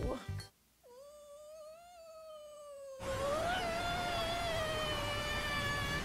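A woman's long, high-pitched "awww", held in one unbroken breath for about five seconds. It starts about a second in, rises slightly, then slowly sinks in pitch with a small waver midway.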